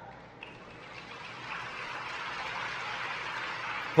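Low, steady hiss-like noise with no tone or rhythm, slowly growing louder.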